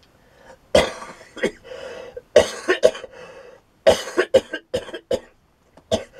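A man's coughing fit, a "coughing collapse": about a dozen coughs in several quick runs, starting a little under a second in. He has pneumonia.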